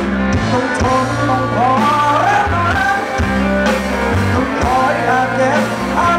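A live rock band playing, with electric guitar, bass and drums under a male singing voice.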